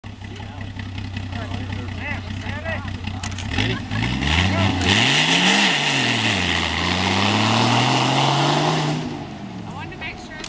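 Jeep CJ engine idling steadily, then revving as the Jeep pulls away. The pitch climbs, drops once at a gear change and climbs again, with a loud rushing noise over the acceleration. The sound fades near the end as the Jeep moves off.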